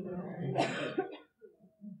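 A man's soft, breathy chuckle into a handheld microphone in the first second, then quiet, with a short low vocal sound near the end.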